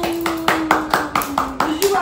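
Hands clapping in a quick, even run of about four to five claps a second, over one long drawn-out voice that falls slightly in pitch.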